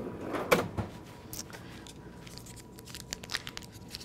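Kitchenware being moved about in a cupboard: one sharper knock about half a second in, then lighter scattered clicks and taps.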